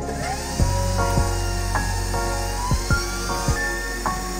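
Electric stand mixer's motor starting up and spinning its wire whisk through a creamy mixture, its whine rising in pitch over the first second, heard under background music.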